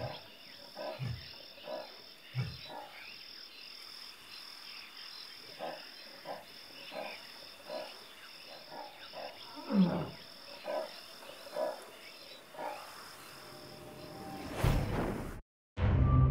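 A large wild animal calling at night: a series of low growling, moaning calls, about one a second near the start and again from about ten seconds in. A steady, pulsing insect chirp runs underneath.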